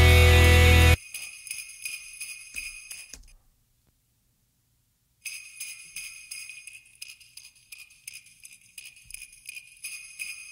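A dense rock mix cuts off suddenly about a second in. It leaves a soloed jingle-bell track of bright shaking jingles, which stops for under two seconds near the middle and then starts again. The jingles' attacks are boosted with the Oeksound Spiff transient processor, with lots of top-end attack added so the bells cut through.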